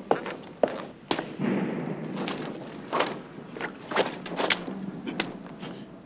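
Irregular footsteps, knocks and clicks on a hard floor, with a short splash about a second and a half in as water is thrown over a person.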